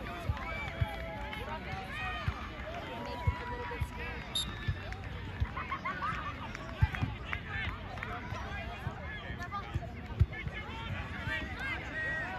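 Background chatter of several people: spectators and young players talking and calling out on the sideline and pitch, with no voice standing out. Scattered short low thumps run under the voices.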